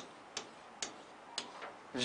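Faint, sharp ticks at uneven intervals, about four or five of them, from a pen tapping against the surface of an interactive writing board as letters are written.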